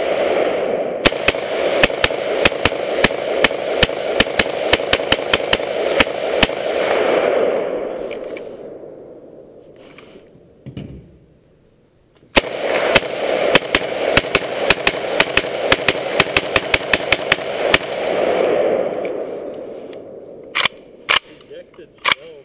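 Vector Arms AK-47 rifle fired in two long strings of rapid shots, several a second. The first string stops about seven seconds in and the second runs from about twelve to eighteen seconds in, each fading into a trailing rumble. A few sharp clacks follow near the end.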